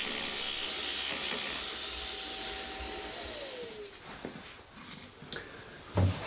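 Jigsaw and its dust extractor running steadily, then the motor winds down in a falling whine about three seconds in, leaving a few light knocks.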